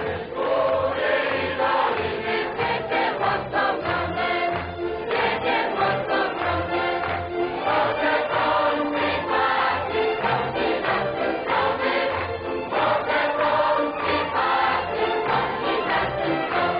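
Choir singing with instrumental accompaniment over a steady low beat.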